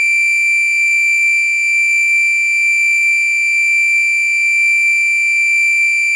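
Home-built 555-timer oscillator circuit with an added amplifier, putting out one steady, unbroken high-pitched electronic tone with a stack of overtones through its speaker.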